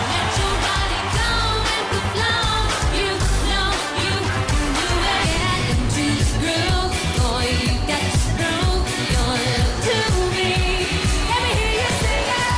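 Pop song with singing over a steady, bass-heavy dance beat, loud and continuous.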